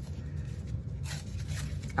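Low steady room hum with faint rustling of a paper greeting card being handled, the rustle picking up about a second in.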